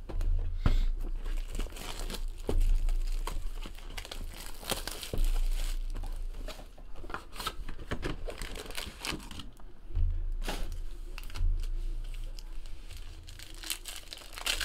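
Foil trading-card packs from a Panini Prizm hobby box crinkling and tearing as they are handled and torn open, with dense crackling throughout and low thuds from handling at the table.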